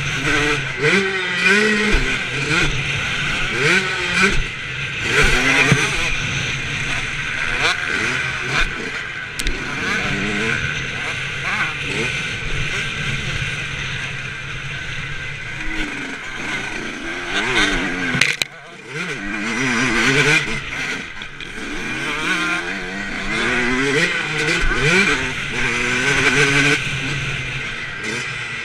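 Motocross bike engine heard from on the bike while riding, its note rising and falling over and over as the rider opens and closes the throttle. The sound dips suddenly for a moment about two-thirds of the way through.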